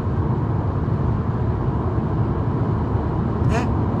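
Steady low rumble of car cabin noise, heard from inside the car.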